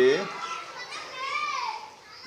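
Children's voices in the background, with one child's high voice rising and falling about a second in.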